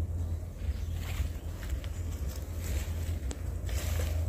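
Wind buffeting the microphone as a steady low rumble, with several short rustling noises from about a second in.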